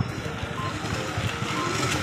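Electric passenger cart driving past, with a short high warning beep repeating about once a second over steady low background noise.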